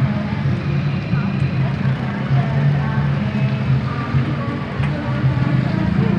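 Motorcycle and scooter engines running and idling close by, a steady low hum throughout, with people's voices and some music in the background.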